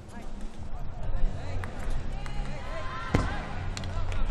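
A gymnast landing a rings dismount on the landing mat: one sharp thud about three seconds in, over a steady murmur of voices in a large hall.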